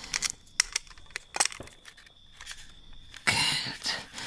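Sound-effect clicks and taps of a small metal box being opened and searched: a scatter of sharp, light clicks over about two and a half seconds, with a faint high steady tone beneath.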